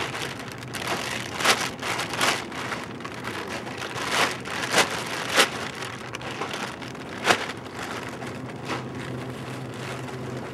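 Thin plastic shopping bags rustling and crinkling as they are pulled out of a larger plastic bag and handled, with irregular crackles, a few of them louder.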